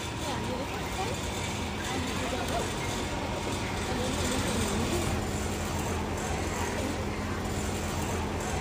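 Steady street-traffic noise with a low hum, and faint voices now and then.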